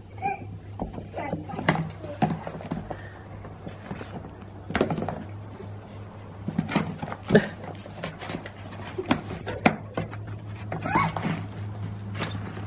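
A whippet puppy rummaging in a bucket: irregular knocks, clatters and scrapes, the sharpest about seven seconds in, over a steady low hum.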